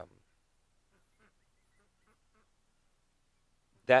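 A pause in a man's speech: near silence with a few faint, short distant sounds about a second in, between a trailing "um" at the start and the next word near the end.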